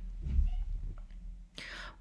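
A woman's quick intake of breath near the end, a short hiss, after a low rumble on the microphone about half a second in.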